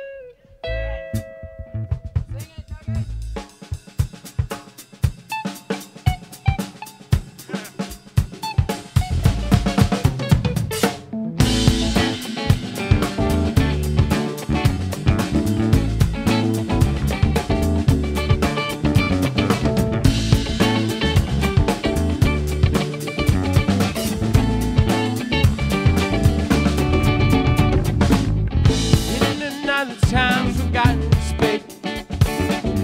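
A live band starts a song: sparse drum-kit hits and a few held notes at first, then the full band comes in about eleven seconds in with drums, congas, bass and electric guitars playing steadily. There is a short break in the playing near the end.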